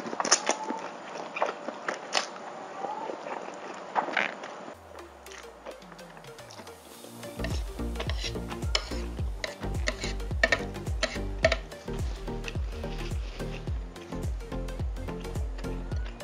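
Instant noodles slurped and chewed close to the microphone, with sharp wet clicks, for the first few seconds. Then background music comes in: a falling bass glide about five seconds in, and a steady beat from about seven seconds, with clicks of chewing still over it.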